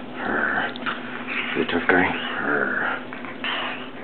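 A puppy sniffing and snuffling in short breathy puffs close to the microphone, with a few brief voice-like sounds in the middle.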